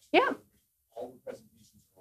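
A woman says a short "yeah" with a sliding pitch, followed about a second later by a couple of brief soft laughs.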